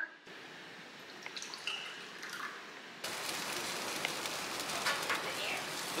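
Faint room tone with a few light clicks, then, about halfway in, a steady crackling sizzle of chicken wings and meat skewers cooking on a barbecue grill.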